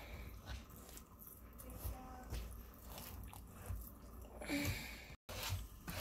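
Faint stirring of a thick, sticky mixture of brown sugar, dry spices, honey, syrup and liquid smoke with a spoon in a stainless steel bowl.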